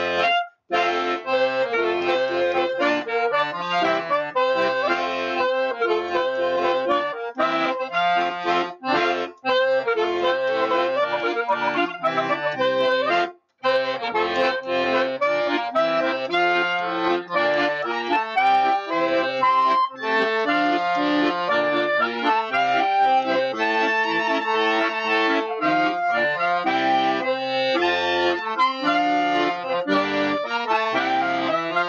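Piano accordion and clarinet playing a song together, the accordion most prominent. The sound cuts out briefly twice, about half a second in and again around the middle.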